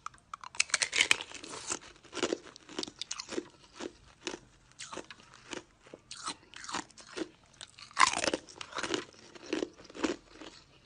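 Clear ice cube bitten and chewed: a loud cracking bite about a second in, then steady crunching chews about two a second, with another loud bite near the eight-second mark.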